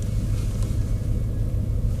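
2013 Ford Mustang Boss 302's 5.0 V8 engine running with a steady low rumble, heard from inside the cabin.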